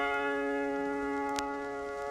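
A piano chord held and slowly dying away, with a faint click about halfway through.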